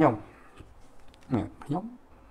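A man's speech: a word ends at the start, then after a pause come two short voiced sounds, with a few faint clicks between.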